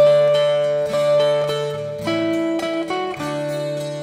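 Instrumental backing music with plucked-string notes over held chords, changing note about every second, with no singing.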